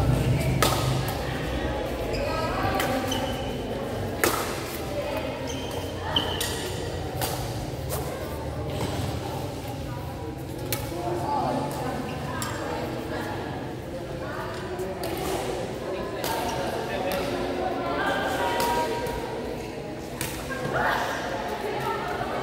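Badminton rally: racket strings strike the shuttlecock again and again, each a sharp hit roughly a second apart that echoes in a large hall, with voices in the background.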